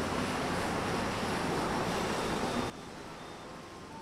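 Steady rushing outdoor noise, wind buffeting the microphone over traffic, which cuts off suddenly about three-quarters of the way through and leaves a quieter hiss.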